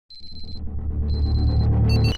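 Electronic intro music for an animated logo: two high steady tones, each about half a second long, over a low drone that grows louder.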